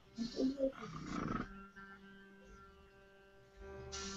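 A few faint, brief murmurs, then the faint steady hum of the small air compressor driving the eBrush airbrush while it sprays marker ink.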